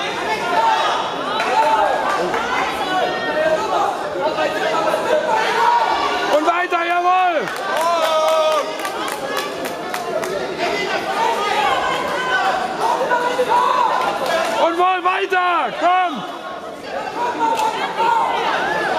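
Many overlapping voices of spectators chattering and calling out around a boxing ring in a large hall. Two louder, drawn-out shouted calls rise above the chatter, one about 7 seconds in and another around 15 seconds.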